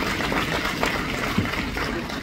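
Audience applauding: a dense, even crackle of many hand claps.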